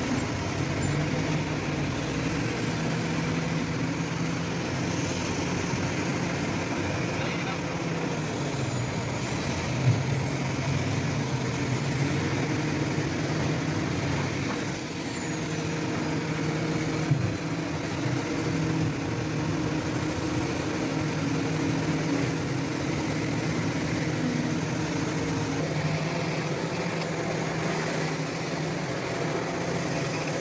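Heavy diesel machinery running steadily: the engines of the excavators and crawler bulldozers working coal on a barge, with a couple of brief knocks about ten and seventeen seconds in.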